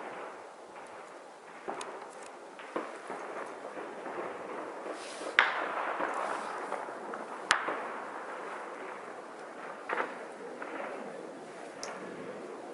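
Gunfire from an armed clash: about seven single shots at irregular intervals, each trailing an echo. The two loudest come about five and a half and seven and a half seconds in.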